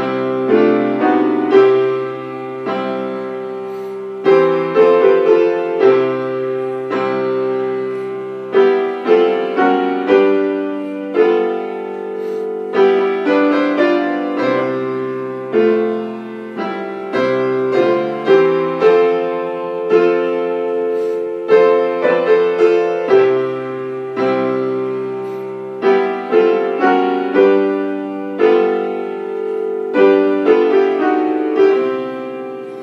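Upright piano playing a hymn in full chords at a moderate pace, each chord struck and left to ring, over held bass notes.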